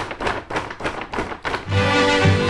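A cat pawing and scratching at a plastic cat-food bag: a string of irregular taps and crinkles. Near the end, swing music with brass starts.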